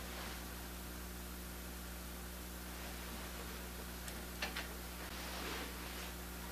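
Quiet room tone: a steady electrical hum and hiss, with a few faint clicks about four and a half seconds in and a soft rustle near the end as hands work a small plastic glue bottle over rubber letters.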